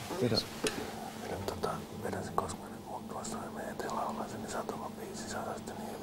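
Whispered speech: two men conferring quietly into each other's ears in Finnish.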